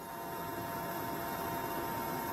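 Steady machine hum: an even noise with a few constant tones, no rhythm and no breaks.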